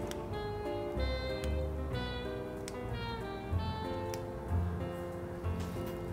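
Soft instrumental background music with held notes over a slow, deep bass line.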